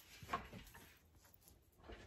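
Near silence: room tone, with one faint short sound about a third of a second in.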